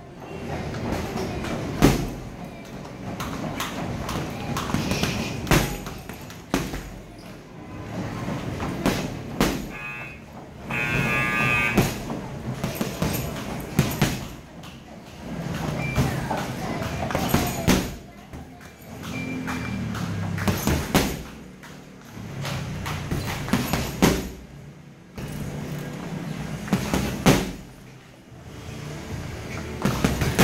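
Boxing gloves punching a heavy bag in irregular combinations, sharp thuds in quick flurries with short pauses between, over background music and voices.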